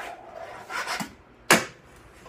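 A fingerboard on a kitchen countertop: its wheels roll with a light rubbing noise and the deck clacks sharply on the counter a couple of times, the loudest clack about three-quarters of the way through.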